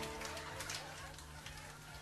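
Faint background music over a quiet telephone line, with no voice answering: the call has gone silent on a bad connection.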